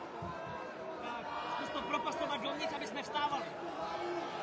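Arena crowd voices around the cage: overlapping chatter and shouts from several people at once, busier from about a second in.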